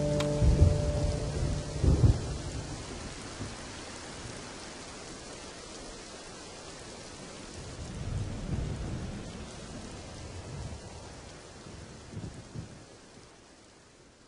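Steady rain with low rolls of thunder, a storm ambience closing out the song, fading away towards the end. The last guitar notes die away just as it begins.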